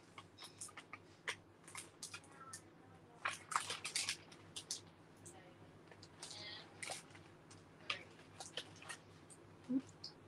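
Clear plastic cellophane wrapping on a pack of scrapbook paper crinkling and rustling as it is handled and opened, in short, irregular crackles.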